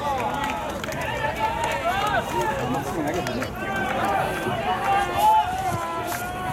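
Several voices calling and shouting over one another without clear words, some calls held long.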